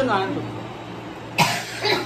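A person coughing once, sharply, about one and a half seconds in, after a brief bit of voice at the start. A steady low hum runs underneath.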